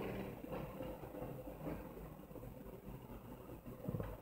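Quiet room tone: a faint steady low hum and hiss, with a few faint clicks near the end.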